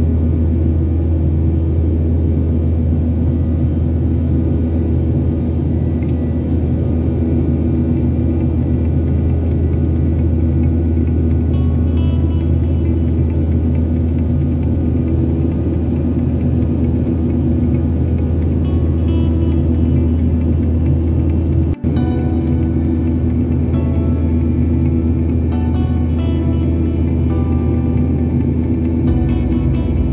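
Steady low drone of a Boeing 737's engines and airflow heard inside the cabin in flight, with background music laid over it whose melody notes come and go from about twelve seconds in. The sound breaks off for an instant about two-thirds of the way through.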